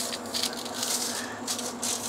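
Aluminium foil crinkling and dry steak rub scraping as the edge of a thick ribeye is pressed and rolled in loose seasoning on the foil, in a run of short, irregular rustles.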